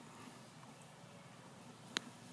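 Faint steady hiss with a single sharp click near the end.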